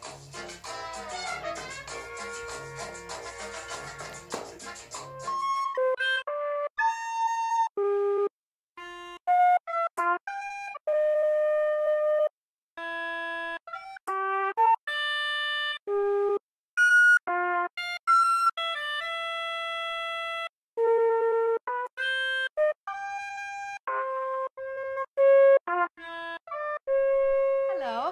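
Recorded ensemble music for about the first five seconds, then a recorder playing a slow melody alone: single held notes, one at a time, with short silences between them.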